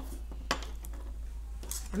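A pencil set down on a tabletop: one sharp tap about half a second in, with a few fainter clicks, over a steady low hum.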